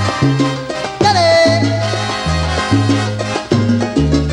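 Salsa band playing live: a steady, repeating bass line under brass and percussion, with a held note that slides down and settles about a second in.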